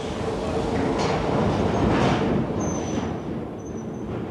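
Old Glasgow Underground train running into a tunnel station platform: a dense rumble that swells to its loudest about two seconds in and then eases off, with a thin high squeal near the end.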